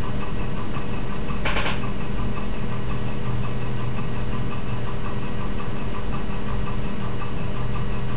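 A steady low hum made of several even tones at a constant level, with one short hiss about a second and a half in.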